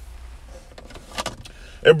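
Faint background noise with a few soft clicks about a second in, then a man's voice resumes near the end.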